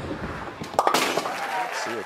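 Bowling ball hitting the pins with a sharp clatter about a second in, knocking down the remaining pins for a spare.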